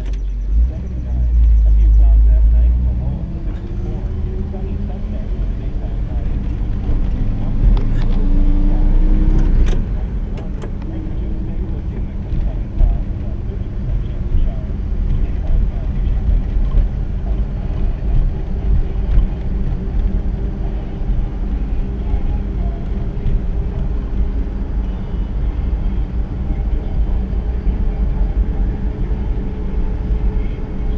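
1959 Chevrolet Bel Air's engine running while driving, heard from inside the car with a deep rumble throughout. Its pitch climbs for several seconds from about four seconds in, then holds fairly steady.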